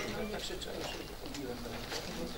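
Faint, low voices murmuring in a meeting room, with a few light clicks and rustles.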